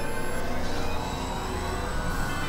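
Experimental electronic drone music from synthesizers: a dense layer of many sustained, unchanging tones over a low rumble, with a dark, eerie feel.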